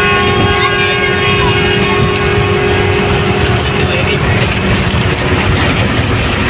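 Passenger bus cabin noise while the bus is moving: loud, steady engine and road noise with a steady droning tone running through it.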